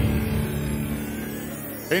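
Low rumbling tail of an edited boom sound effect, fading steadily over a held low tone. A man's voice starts at the very end.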